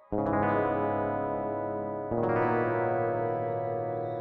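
Background music: a distorted electric guitar chord struck just after the start and again about two seconds in, each left ringing and slowly fading.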